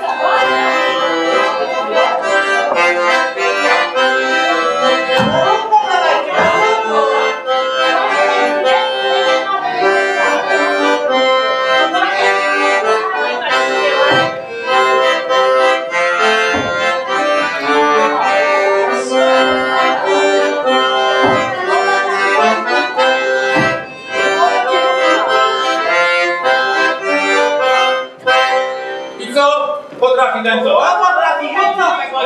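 Piano accordion playing a Polish folk dance tune over a held drone note, with a few short low thuds through it.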